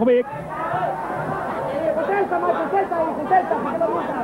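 Several voices chattering and calling out at once, overlapping: the babble of an arena crowd.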